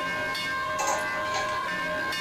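Temple bells ringing steadily, several held ringing tones sounding together with a few light metallic strikes.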